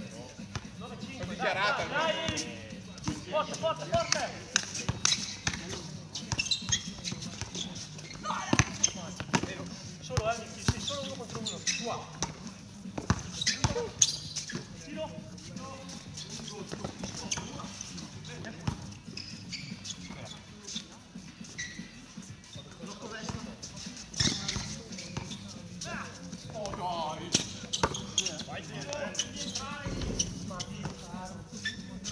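A basketball bouncing and hitting a hard outdoor court during a game, as scattered sharp thuds, with players' shouts and calls at intervals.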